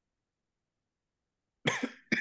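Silence, then near the end a single short, loud cough from a person.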